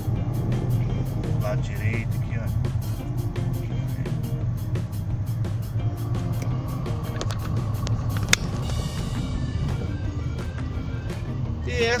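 Steady low rumble of a car being driven, heard from inside the cabin, under background music with a steady beat; a single sharp click about eight seconds in.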